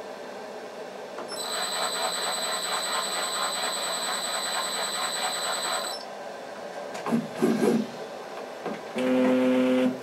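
CNC router spindle spinning the foil roll at low speed with a steady high-pitched whine, starting about a second in and stopping about six seconds in. A louder low steady hum follows in the last second.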